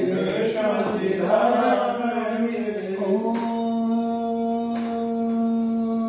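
A man chanting a Jain mantra; about three seconds in, the chant settles onto one long held note.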